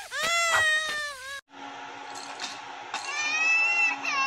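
High-pitched crying of a cartoon baby, long wails that cut off abruptly about a second and a half in. After a short gap, another cartoon baby's wailing cry rises near the end.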